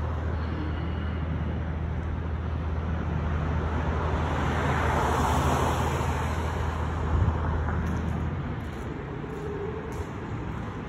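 Road traffic on the Interstate 70 overpass overhead and the street beside it: a steady low rumble, with one vehicle growing louder and passing about halfway through.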